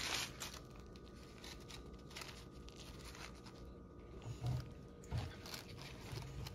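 Faint, intermittent crinkling of paper sandwich wrappers being handled, a few soft rustles spread over quiet room tone.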